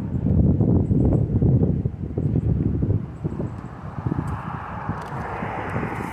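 Wind buffeting the phone's microphone, a loud gusty rumble through the first half that eases off. Near the end the tyre noise of a car coming along the road grows louder.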